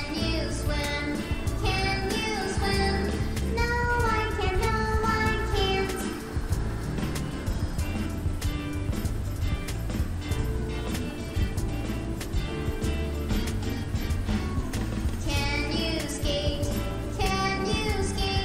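Children's song: a child's singing voice over a steady backing track. The singing drops out for an instrumental stretch in the middle and comes back near the end.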